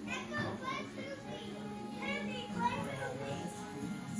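Indistinct children's voices, talking and squealing as they play, with music playing underneath.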